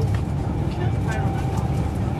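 Interior running noise of a Class 390 Pendolino electric train at speed: a steady low rumble with a faint steady whine, and quiet passenger voices underneath.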